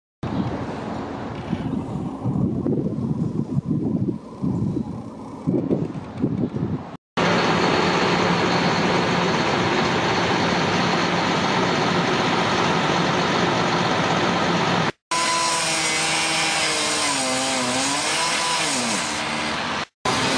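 Heavy street-work machinery in three cuts: a boom-crane truck's engine running with uneven low rumbles, then running steadily, then a cut-off saw biting into a rusted steel utility pole, its pitch dipping and rising under load.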